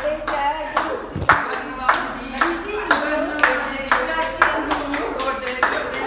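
Group hand clapping in a steady rhythm, about two claps a second, keeping time for giddha folk dancing.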